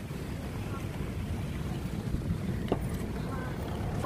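Steady low road rumble of a car heard from inside the cabin while driving, with a single sharp click a little under three seconds in.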